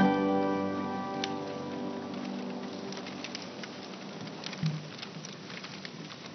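Pipe organ chord breaking off and dying away in the cathedral's long reverberation over the first two seconds. After it comes a faint, scattered clicking of many shoes on the marble floor as people file forward, with one brief low thump about halfway through.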